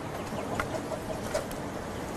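A chicken clucking in a quick run of short notes over a steady low background noise.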